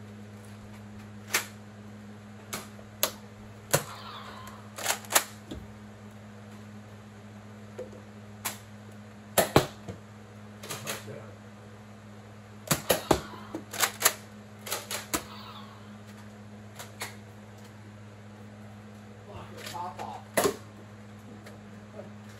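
Nerf blasters firing and foam darts striking furniture and boxes: scattered sharp clicks and snaps, some in quick runs of two or three.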